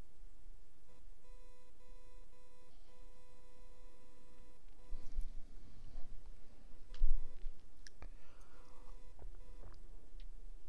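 Electronic beeping tone from conferencing or AV equipment: a run of short beeps, then one held for about two seconds, followed by clicks, knocks and a louder thump of the equipment being handled about seven seconds in, and another short beep near the end.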